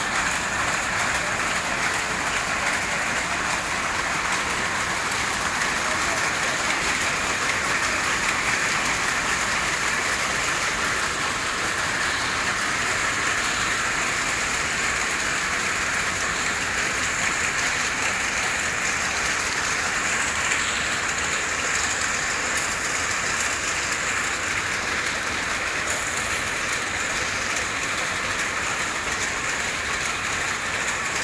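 A steady, even hiss that runs unchanged, with no distinct knocks or other separate events.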